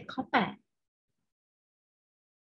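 A voice speaking briefly in Thai, cut off about half a second in, then dead silence.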